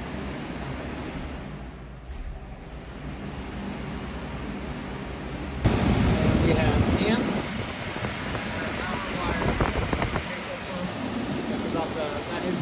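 A steady low hum, then after a cut about halfway through, the louder steady rush of an air handler's blower fan running close by. The blower is running on a heat call (red jumped to white), which is either how the control board is programmed or a sign that the board is faulty.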